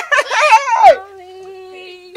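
A woman's excited, high-pitched cries of delight, running into one long held note from about halfway through.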